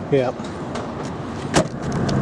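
A car's trunk lid slammed shut: one sharp thud about one and a half seconds in.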